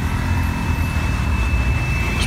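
Motor vehicle engines running in close street traffic, a steady low rumble. A faint thin high whine joins about halfway through.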